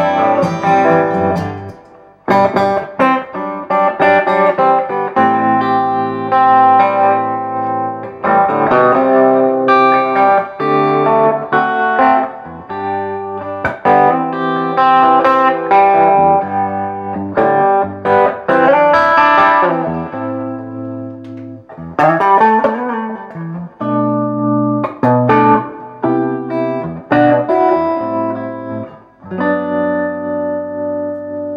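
Gibson ES-335 semi-hollow electric guitar played through a Fishman Loudbox Mini 60-watt solid-state acoustic amplifier: plucked single-note lines and chords, with an overdrive pedal engaged for the later part.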